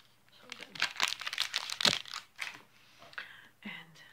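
Plastic wrapper of a Power Crunch protein bar crinkling and tearing, a dense crackly burst through the middle that dies down after about two seconds.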